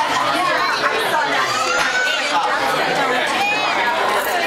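Overlapping chatter of many voices at once, adults and children, with no single speaker standing out.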